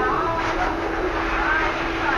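Steady background noise with a constant low hum, and faint voices in the background.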